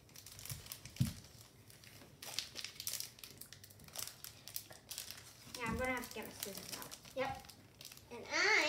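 Foil wrapper of a Pokémon trading-card booster pack (Rebel Clash) crinkling in the hands as it is opened, a rapid run of crackles. A brief voice is heard twice in the second half.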